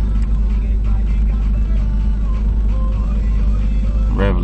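2002 Jeep Liberty engine idling steadily, heard from inside the cabin as a constant low hum; the engine is still cold and warming up.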